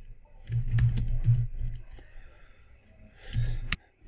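Computer keyboard and mouse clicks: a run of clicks about half a second to a second and a half in, and another short run near the end.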